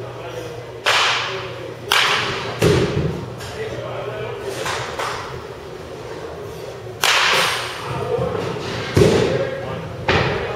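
Indoor batting-cage practice: a bat cracks against pitched baseballs and the balls thud into the netting. There are sharp impacts about a second in, at two seconds, at seven seconds and a weaker one midway, with heavier thuds soon after the second impact and near the end, each ringing briefly in the hall.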